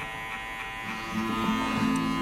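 Electric hair clipper buzzing steadily as it cuts hair over a comb. Background music comes in about a second in.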